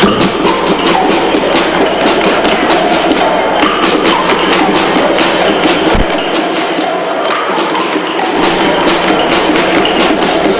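Children's percussion ensemble playing a quick, even rhythm of sharp wooden-sounding strokes, over the steady chatter of a crowd in a reverberant hall.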